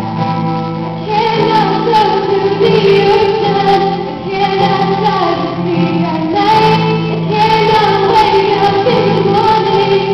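A young woman singing a slow song with long held notes, accompanied on acoustic guitar, performed live; the singing gets louder about a second in.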